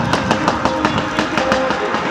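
Fireworks going off in quick succession, many sharp pops and crackles several times a second, over music with long held notes.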